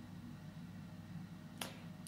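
A single sharp computer mouse click about one and a half seconds in, over a faint steady low hum.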